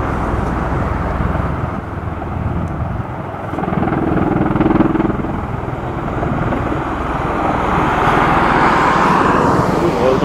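Bell Boeing V-22 Osprey tiltrotor in helicopter mode, its proprotors and turboshaft engines running as it hovers low and settles onto the airfield. A steady rushing rotor noise, with a higher engine whine building in the last two seconds.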